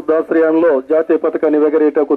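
A man speaking continuously into a handheld microphone, his voice amplified.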